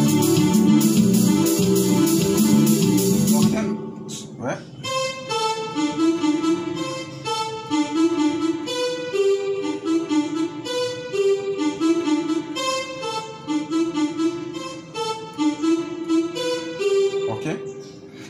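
Yamaha portable electronic keyboard: a full passage with chords over an even beat stops about three and a half seconds in, and then a solo melody of single notes is played slowly, two or three notes a second.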